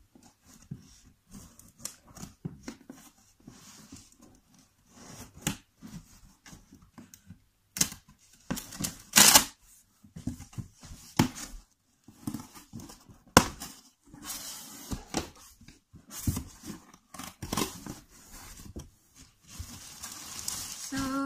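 A parcel being torn open and its packaging rustled by hand: irregular rips and crackles, the loudest about nine and thirteen seconds in.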